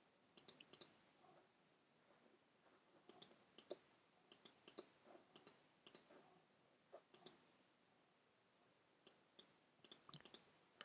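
Faint computer mouse clicks, many in quick pairs or threes, with near-silent gaps between them.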